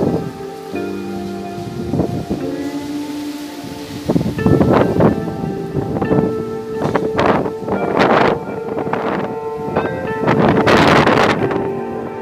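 Background music with sustained held chords. From about four seconds in, repeated gusts of strong wind buffet the microphone in loud, rough surges.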